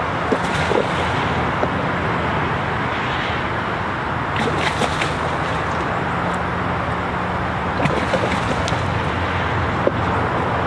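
A steady rushing background noise with a low hum, and a few short clicks about halfway through and again near the end as a fish is reeled in on a spinning rod.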